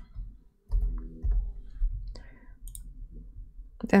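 A few scattered clicks of a computer mouse and keyboard, with a low thump and rumble about a second in.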